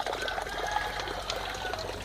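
Steady trickle of water pouring into a small pond, the outflow of a bog filter that keeps the water clear and oxygenated.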